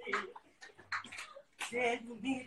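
Quiet, broken-up speech and vocal sounds from people in a small room, with breathy, hissy bits in between and a short voiced phrase near the end.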